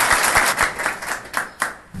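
Audience applauding, with many overlapping hand claps that die away near the end.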